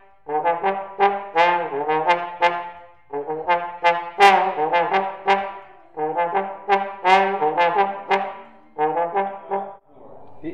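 Slide trombone playing short, sharply attacked notes in four quick phrases with brief pauses between them, stopping just before the end.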